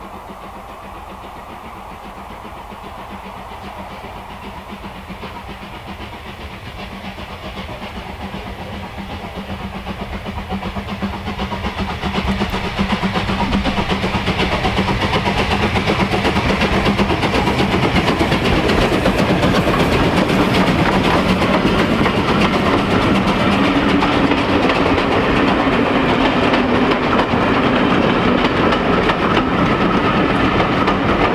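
A steam locomotive hauling a passenger train approaches, its sound building steadily over the first dozen seconds. It then passes close by, loud and steady, with the coaches running by and the wheels clicking over the rail joints.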